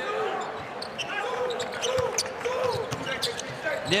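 A basketball being dribbled on a hardwood court, sharp bounces every fraction of a second, over the voices and murmur of an arena crowd.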